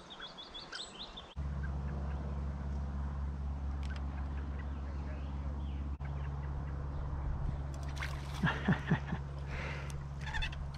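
A small bird chirps a quick run of high repeated notes at the start. It is then cut off by a sudden steady low rumble that carries on, with a few soft knocks and handling noises near the end.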